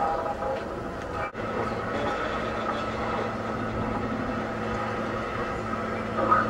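Free-improvised experimental music from an ensemble of saxophone, cello, sound objects and electronics: a dense, rumbling drone texture with a few held tones, and a steady low hum settling in about two seconds in. The sound cuts out for an instant just after one second.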